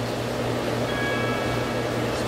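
Steady low hum under an even hiss, the room tone of running equipment, with a few faint high steady tones coming in about halfway.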